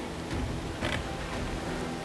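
Steady hiss of outdoor background noise, with one brief click a little under a second in.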